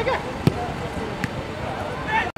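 A football being kicked on grass: one sharp thud about half a second in and a fainter one a little over a second in, with voices calling out around the pitch.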